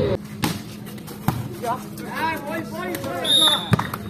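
A volleyball being struck during a rally: a few sharp hits, with voices shouting in between and a short high whistle blast just before the last hit.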